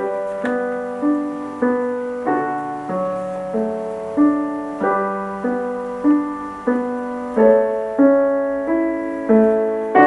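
Piano music: a calm melody of chords, each struck sharply and then dying away, played at an unhurried, even pace.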